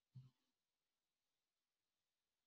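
Near silence: a pause in an online call, with one very faint, brief low sound just after the start.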